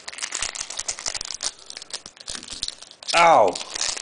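Foil trading-card pack wrapper crinkling and tearing as it is pried open by hand, with many irregular crackles; the wrapper is hard to open. About three seconds in comes a short vocal sound that falls in pitch.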